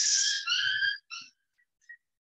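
A short, high, whistle-like tone in three notes: a held note, a slightly higher held note, then a brief lower note, all within about the first second and a quarter.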